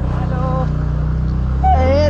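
Engine of a two-wheeler running steadily as it is ridden, a low even hum.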